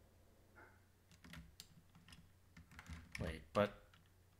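Computer keyboard keys being typed in scattered strokes: a few clicks about a second in, then a quicker run near the end, the last of them the loudest.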